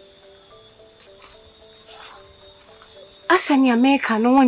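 Crickets chirping steadily, about four high chirps a second, over soft music of held notes that change pitch in steps; a voice starts speaking near the end.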